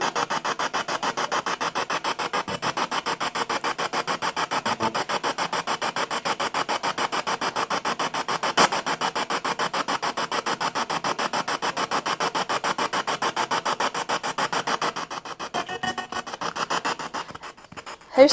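Spirit box sweeping through radio stations: a steady rasp of static chopped about ten times a second, with a single sharp click about halfway through. The sweep thins out and drops in level over the last few seconds.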